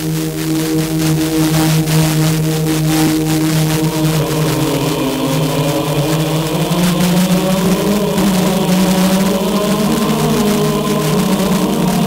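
Church choir chanting long held notes, heard as an FM broadcast through a car radio, with a crackle of static from weak long-distance reception.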